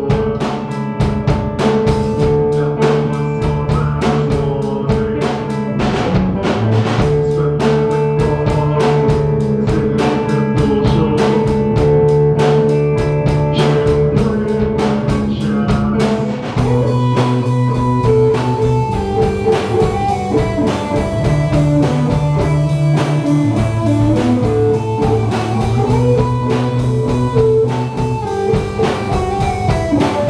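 A rock band playing: a drum kit keeps a steady beat under long held tones from a long wooden wind pipe. About halfway through, an electric guitar comes in with a wandering melody.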